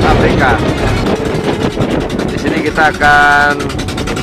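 Voices calling out over a steady low rumble, with one long held note a little after three seconds in.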